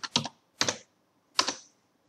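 Computer keyboard being typed on: a few separate keystroke clicks spread over a couple of seconds, with short pauses between them.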